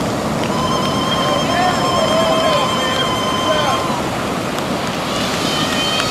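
Ocean surf breaking and washing up the beach, a steady rush. Over it, a long, high, steady tone with overtones sounds from about half a second in to nearly four seconds, and a second one starts near the end, with some calling voices.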